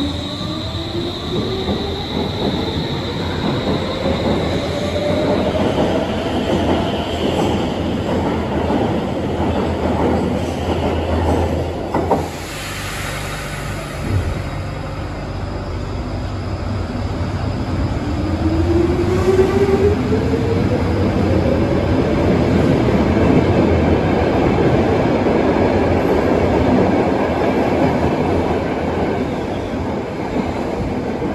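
Stockholm metro trains pulling out of a station. First a modern C30 train accelerates away with a rising motor whine over its wheel rumble. After a cut about midway, an older blue Cx-type train starts off with its own rising motor tone, and its wheel and rail noise grows louder toward the end.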